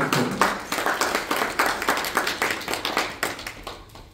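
A small audience applauding, a dense scatter of hand claps that thins and fades out near the end.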